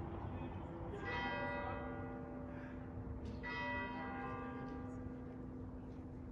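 A large bell tolling slowly: two strikes about two and a half seconds apart, each left ringing on over low background noise.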